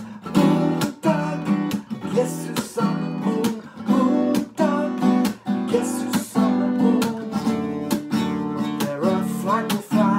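Steel-string acoustic guitar strummed with a pick, playing full chords in a steady rhythm of about two strokes a second.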